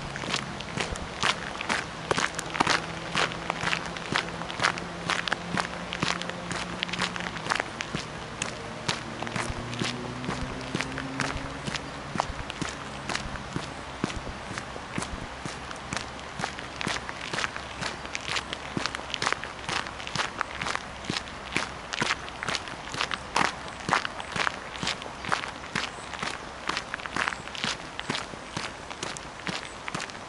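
Footsteps crunching on a gravel path at a steady walking pace, about two steps a second.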